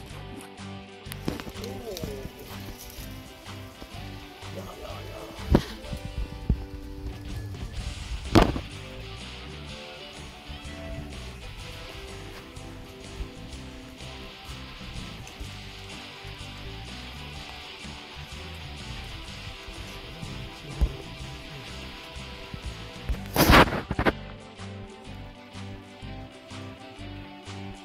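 Background music playing throughout, with a few sharp knocks, the loudest about eight seconds in and near the end.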